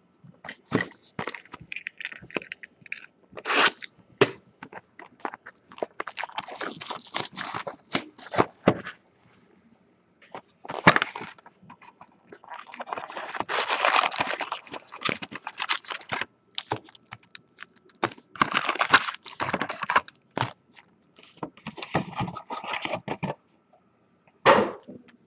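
Foil-wrapped trading card packs crinkling and rustling as they are handled and pulled out of a cardboard hobby box, in irregular bursts with short pauses; the longest run of crinkling comes about halfway through.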